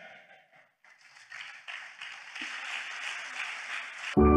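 A congregation applauding, the clapping swelling about a second in and going on steadily.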